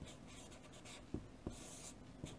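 Chalk writing on a chalkboard: faint, short scratching strokes, the longest one near the end, with a couple of light clicks.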